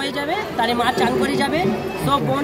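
Several people talking at once close by, over the chatter of a street crowd.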